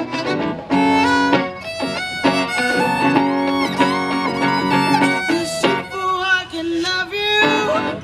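Violin playing an instrumental solo line with sliding, wavering notes over plucked guitar accompaniment.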